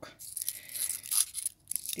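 Dry, papery withered Phalaenopsis orchid petals rustling and crackling as fingers handle them close to the microphone, as a quick run of small crackles with a short break about one and a half seconds in.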